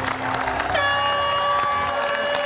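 A long, steady horn blast starts under a second in and holds on one pitch, over clapping from the audience.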